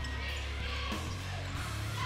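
Gym sound during live play: a basketball being dribbled on the hardwood court, with a few faint knocks over a steady low hum and faint music.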